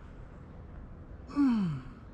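A man's loud voiced sigh, a breath out of about half a second falling steeply in pitch, near the end, as he arches back into a kneeling yoga backbend (camel pose).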